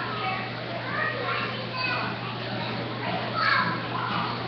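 Children playing and chattering, mixed with other overlapping voices, with one voice rising louder about three and a half seconds in. A steady low hum runs underneath.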